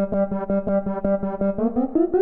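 Music: a synth keyboard repeating one chord in quick, even pulses, about six a second, then stepping upward in pitch near the end as the intro of a trap beat.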